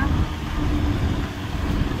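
Road noise of a car driving on a wet road, heard from inside the cabin: a steady low rumble and tyre hiss, with a steady hum that fades out about a second in.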